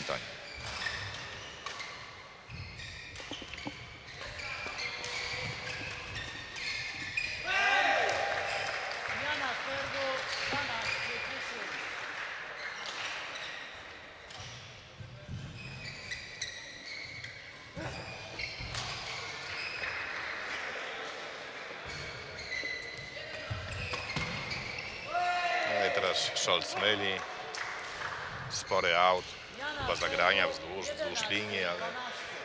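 Badminton play in a sports hall: a series of sharp racket-on-shuttlecock hits and squeaks of shoes on the court floor, with voices echoing in the background.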